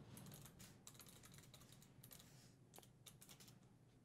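Faint computer keyboard typing: a run of quick keystrokes as a password is typed into a login form.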